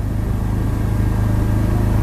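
A steady low mechanical hum that grows slightly louder over the two seconds.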